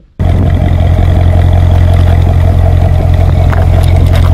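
A car engine running loud and steady with a deep drone, cutting in suddenly just after the start.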